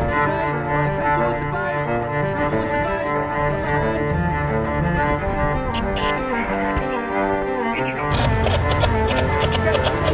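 Background film score of sustained bowed strings, cello and double bass. About eight seconds in a percussive beat of about four strokes a second joins.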